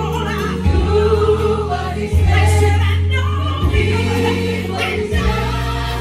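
Live gospel choir singing with a female lead over band accompaniment, with deep sustained bass notes changing every second or two.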